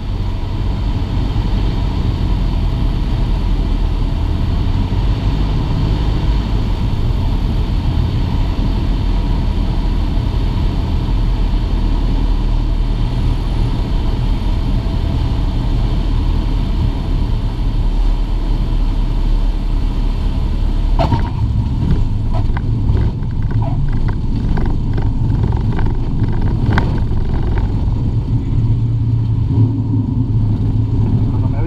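Cessna 152's four-cylinder Lycoming engine and propeller droning steadily, heard inside the cockpit on final approach and landing. A run of short knocks and rattles comes in about two-thirds of the way through.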